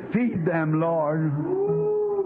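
Voices praying and praising aloud in a congregation, their pitch rising and falling, over a steady held musical note, on an old recording with a dull, narrow sound.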